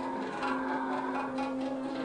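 Live Hindustani classical music: one long note held steady with its overtones, and a few light tabla strokes.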